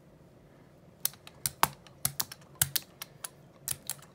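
Brayer rolling back and forth through tacky paint on a gel printing plate, making a string of sharp, irregular sticky clicks that begin about a second in.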